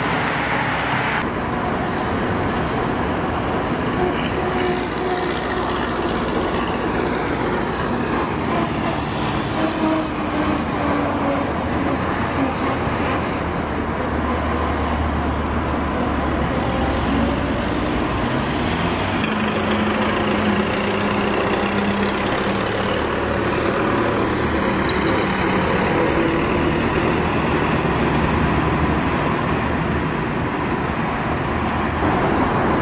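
Road traffic on a city avenue: a continuous wash of cars driving past. About halfway through, a heavier vehicle's low engine rumble swells for a few seconds.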